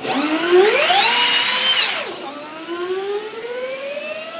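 Jaguar Formula E electric race car accelerating: its electric motor and drivetrain whine rises steeply in pitch, holds, and falls away about two seconds in, then a second whine climbs slowly and steadily.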